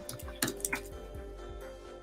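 A few light computer-keyboard clicks in the first second, over quiet background music.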